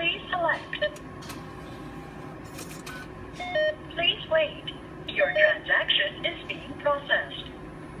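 Japan Post Bank ATM sounds: a short electronic tone as the on-screen button is pressed, a brief run of beeps about three and a half seconds in, then the machine's recorded voice guidance speaking for several seconds over a steady low hum.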